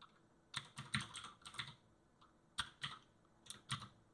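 Computer keyboard typing: two short runs of keystrokes, the first starting about half a second in and the second near the end.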